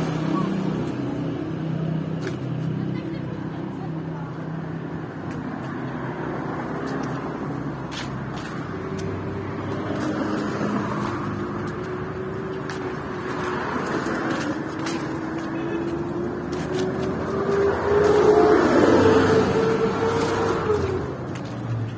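Street traffic: a vehicle engine's hum slowly rising in pitch through the second half, growing loudest near the end as a car passes.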